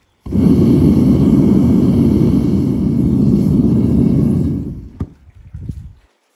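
Gas-fired melting furnace burner running with a loud, steady rushing noise as it heats scrap copper. The noise cuts in suddenly, holds level for about four and a half seconds, then drops away, with a sharp click about five seconds in.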